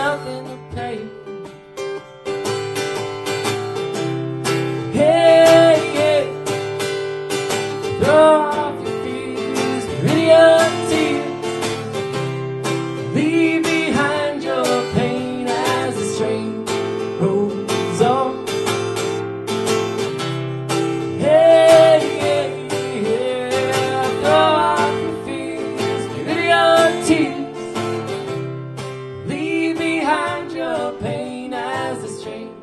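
Live acoustic folk music: an acoustic guitar strummed steadily, with sung vocals joining a few seconds in.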